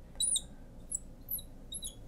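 Marker squeaking on a glass lightboard as lines are drawn: about four short, high squeaks, one per stroke. The first and loudest comes about a quarter second in.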